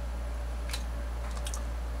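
Steady low electrical hum, with two faint clicks, one a little under a second in and one about a second and a half in.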